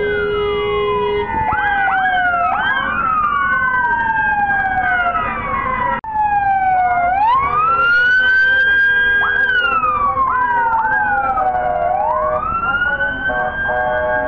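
Several emergency-vehicle sirens wailing together in slow rising and falling sweeps, with short quick whoops among them. Steady car horns are held over them at the start and again near the end.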